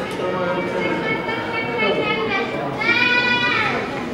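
A woman's high-pitched, wordless crying out, ending in one long wailing cry about three seconds in.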